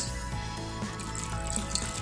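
Water poured from a cup into a pot of raw chicken pieces, with background music playing over it.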